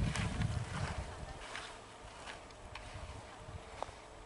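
Low rumbling wind noise on the microphone while skiing, strongest for the first second and a half and then easing, with a few faint clicks.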